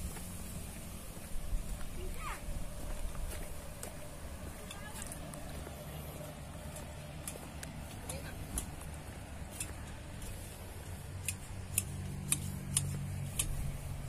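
Outdoor background with faint distant voices over a low steady hum, and scattered small clicks that come more often near the end.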